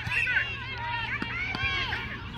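Several raised voices calling out at once, overlapping one another, with a couple of faint thumps near the end.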